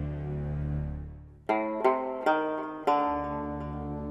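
Dramatic background score: a sustained low drone fades away, then four sharp plucked string notes sound one after another, each ringing out.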